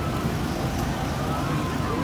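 Steady outdoor din of low rumble and wind on the microphone, with a faint, wavering high tone drifting above it.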